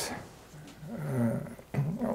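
A man's brief low murmur, a single wordless voiced sound that rises and falls in pitch about a second in.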